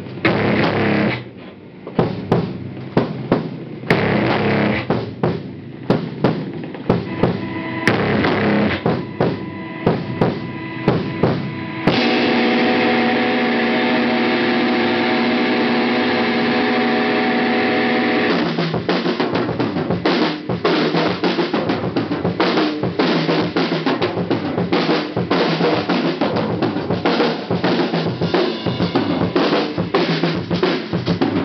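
Live hardcore band playing on two drum kits: accented drum and cymbal hits for about the first twelve seconds, then a held, ringing chord with a cymbal wash for about six seconds, then fast, dense drumming.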